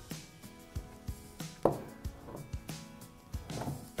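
Several light knocks of small glass bottle vases being set down on a wooden tabletop, the loudest about one and a half seconds in, over soft background music.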